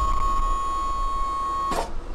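Pindad Anoa APC's hydraulic pump whining steadily as the rear ramp door is powered down. The whine cuts off suddenly near the end with a short clunk as the ramp comes to rest.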